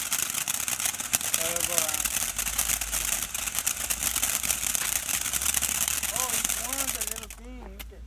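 Ground fountain firework spraying sparks, a steady hiss with dense crackling that cuts off about seven seconds in as the fountain burns out.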